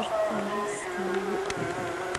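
A steady, slightly wavering buzzing hum runs throughout, joined twice by a short low tone, and a couple of faint clicks come near the end.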